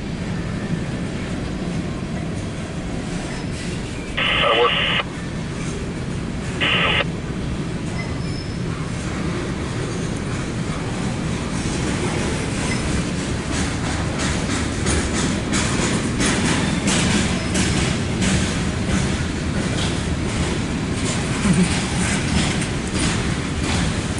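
CSX mixed freight train of tank cars and covered hopper cars rolling past, a steady rumble with rail-joint clicks growing dense in the second half. Two short bursts of scanner-radio noise come about four and seven seconds in.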